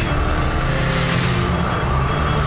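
Suzuki Katana motorcycle's inline-four engine running steadily at road speed, with wind and tyre noise over it and a higher tone that sinks slightly in pitch.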